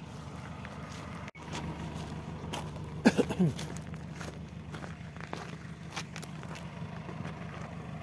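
Nissan Navara pickup engine idling steadily, with footsteps on gravel and twigs; a brief voice about three seconds in.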